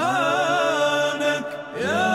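Devotional Arabic vocal chanting (nasheed style): a voice sings a wavering, ornamented melody over sustained held voices, then glides up into a new note near the end.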